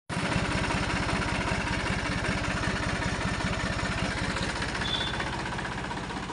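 Massey Ferguson 5245 DI tractor's turbocharged three-cylinder diesel engine running at idle through a tall vertical exhaust stack, with a steady, rapid exhaust beat. The engine is still cold.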